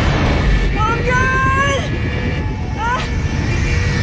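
Film sound effects of a space pod hurtling through a wormhole: a loud, continuous rushing rumble, with a woman's short strained cries over it about a second in and again near three seconds.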